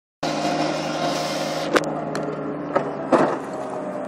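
Skid-steer loader engine running steadily, with several sharp knocks and scrapes as its bucket pushes rubble along a concrete kerb.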